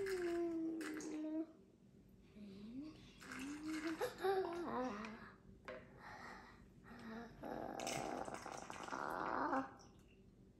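A young child's wordless vocal noises: closed-mouth humming and sing-song sounds that rise and fall in pitch, in short bursts over the first five seconds. About seven and a half seconds in comes a buzzing, gurgling noise lasting about two seconds.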